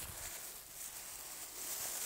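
Faint, steady rustling of thin disposable plastic gloves and their plastic bag being handled and pulled onto hands.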